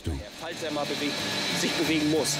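A man's voice speaking in short phrases over a steady hiss of industrial-hall background noise, with a thin, constant high whine.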